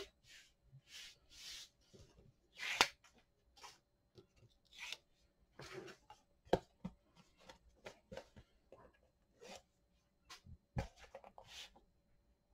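Quiet, intermittent rustles and scrapes of stiff cardstock being handled while the backing liner is peeled off strips of double-sided Scor-Tape. A few sharp taps stand out among them.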